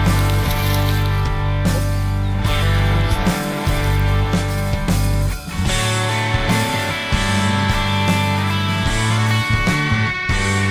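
Background rock music with guitar and a steady bass line.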